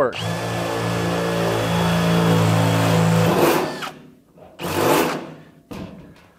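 Cordless drill running steadily for about three seconds as the bit cuts a test hole through the sheet-steel top of a toolbox, then stopping. Two short bursts of noise follow, about a second apart.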